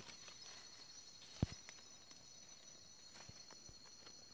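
Steady high-pitched insect chorus with short, high chirps repeating about once a second. A single sharp click comes about a second and a half in, and a couple of faint ticks follow near the end.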